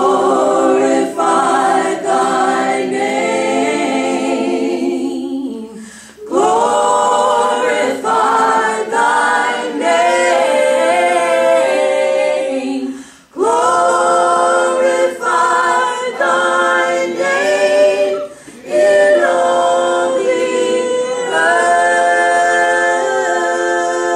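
Three women singing together in harmony, holding long sustained notes in phrases of a few seconds each, with brief breaks for breath between phrases.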